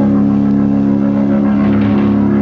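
Live band music: a loud chord held steady with little drumming.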